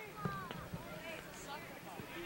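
Faint, distant voices of players and spectators calling and shouting, several overlapping.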